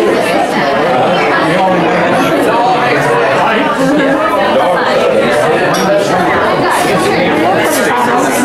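Crowd chatter: many people talking over one another in a large hall, no single voice standing out.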